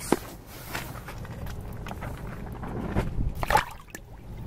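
Handling rustle, then a cisco herring splashing into the water of an ice-fishing hole as it is released, the loudest sound coming about three and a half seconds in. There is a sharp click right at the start.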